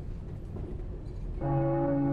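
Faint low rumble, then a sustained bell-like ringing tone with several overtones starts suddenly about a second and a half in and holds steady.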